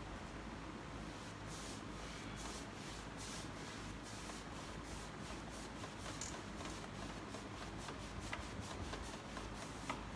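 Paintbrush stroking chalk paint onto a wooden dresser: repeated soft brushing strokes, a few a second, over a low steady hum.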